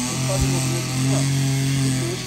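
A steady low hum, strongest in the second half, with a low thump about half a second in.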